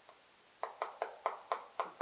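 Chalk tapping on a chalkboard as words are written: a quick run of about seven sharp taps, around five a second, beginning about half a second in.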